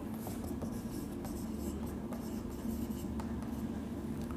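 Marker pen writing on a whiteboard in a series of short faint strokes, over a low steady hum.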